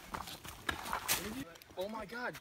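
Footsteps of several people walking on a dirt trail of roots, stones and dry leaves: irregular scuffs and knocks. A man's voice starts near the end.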